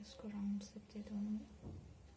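A woman's voice speaking briefly and softly, a murmured phrase of about a second.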